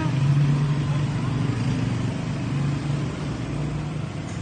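A motor running steadily with a low drone that wavers slightly in pitch.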